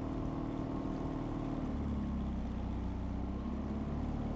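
Boat engine running steadily with an even, low hum.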